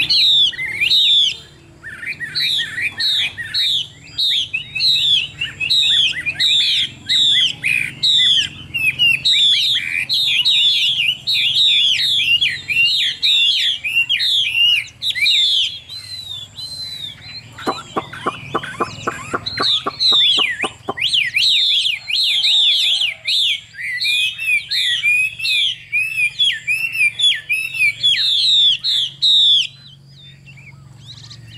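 A caged Chinese hwamei singing loudly and continuously, a fast string of varied, repeated whistled phrases. A few seconds of low, evenly pulsed rattling, about four or five strokes a second, break the song about two-thirds of the way through.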